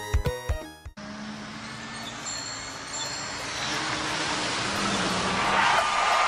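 Bumper music with a beat cuts off abruptly about a second in. A rushing noise then swells steadily, and a siren tone begins near the end: sound effects opening a radio ad.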